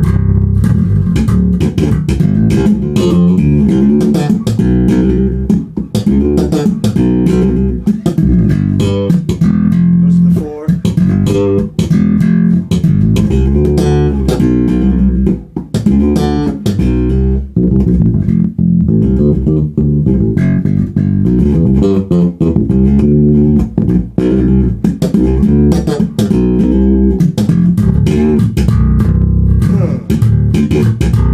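Dingwall NG2 five-string fanned-fret electric bass, played through a Gallien-Krueger MB Fusion 800 head and a Bear ML-112 cabinet: a busy funk bass line in D, a near-continuous stream of plucked notes with only brief breaks.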